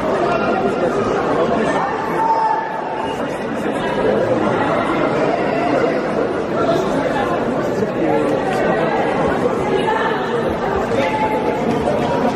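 Many people talking at once in a large sports hall, a steady murmur of overlapping voices with no single voice standing out.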